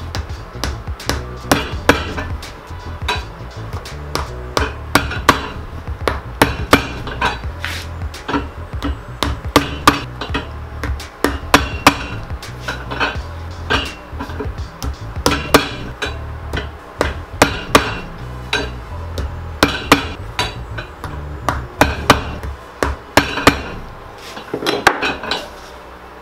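Cobbler's hammer tapping heel nails into a shoe's combination heel and top piece on an iron last: sharp metal-on-nail strikes, irregular, about one or two a second.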